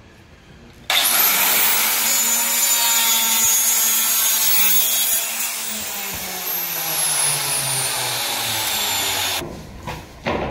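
A handheld electric circular cutter spins up about a second in and saws through a WPC louver panel. It runs loud and steady, its pitch slowly falling in the second half as the blade works through the cut, and stops shortly before the end.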